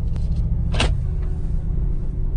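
Steady low rumble of a car's engine and road noise heard from inside the cabin while driving, with a short hiss just under a second in.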